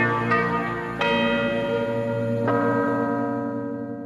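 Programme theme music of bell-like chimes: a few struck notes, each ringing on and slowly dying away, fading out near the end.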